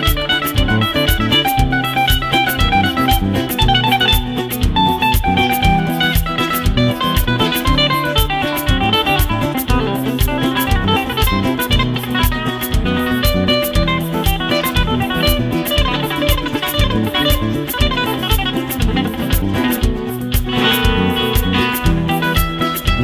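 Nylon-string flamenco guitar played through an amplifier: fast picked runs in a flamenco rumba over held bass notes and a steady beat, with a denser passage near the end.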